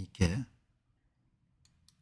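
A short vocal sound from a man at the start, then two faint, sharp computer mouse clicks in quick succession near the end.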